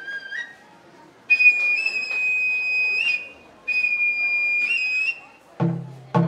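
Japanese festival music (matsuri bayashi): a bamboo festival flute plays two long, high, held notes with short breaks between them, then a drum is struck near the end.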